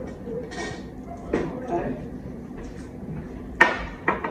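Light clatter of kitchen utensils and dishes around a mixing bowl, with one sharp knock near the end.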